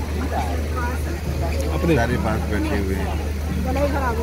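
People talking nearby and in the background over a steady low hum.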